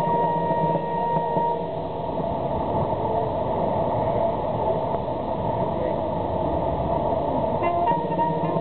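A military band's brass playing held notes, which stop about two seconds in. Then a murmur of voices and street noise, until the band's brass starts playing again near the end.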